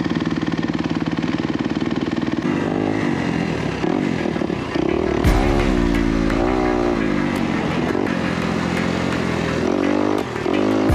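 Dirt bike engine being ridden around a motocross track: a fast, even pulsing at first, then revving up and dropping back again and again through the gears. A thump comes about five seconds in.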